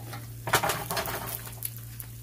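Fried eggs sizzling and crackling in oil in a skillet, the crackle turning suddenly louder about half a second in.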